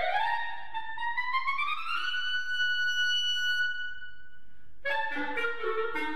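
Solo clarinet playing an upward glissando into a climbing line that settles on a long held high note. The note breaks off about five seconds in, and a quick flurry of notes follows, tumbling downward.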